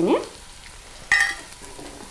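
Onions, garlic and green chillies sizzling faintly in a non-stick frying pan as masala powder is added. About a second in there is a single brief metallic clink, the spoon tapping the pan.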